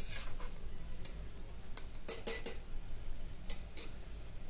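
A metal spatula stirs and scrapes minced mutton around an aluminium pressure cooker, with irregular sharp scrapes and clinks against the pot, a cluster of them about two seconds in. A faint sizzle of the meat frying in oil runs underneath.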